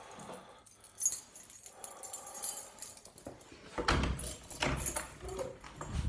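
Clicks, rustling and a dull thump as a door is unlatched and opened, with a sharp click about a second in and the loudest thump around four seconds in.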